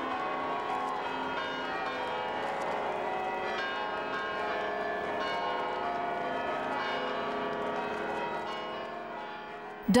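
Church bells ringing in changes: a continuous peal of overlapping bell tones at a steady level, with voices from a crowd beneath it.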